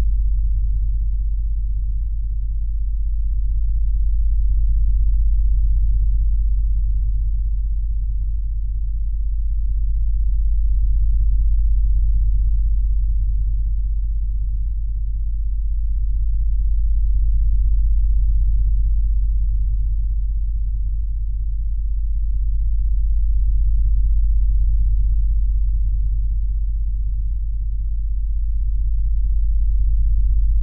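Binaural-beat meditation tone: a deep, steady pure-tone hum with a second tone above it, swelling and fading slowly about every six seconds.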